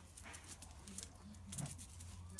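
A dog moving about on stone paving, faint, with scattered light clicks and one short low dog sound about one and a half seconds in.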